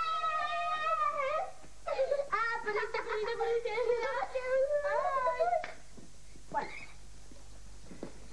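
Children's high-pitched, drawn-out vocal cries: one held wail of about a second and a half, then a longer one of about four seconds, followed by a short vocal sound.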